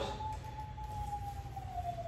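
Faint siren wail: a single smooth tone slowly falling in pitch over about two seconds.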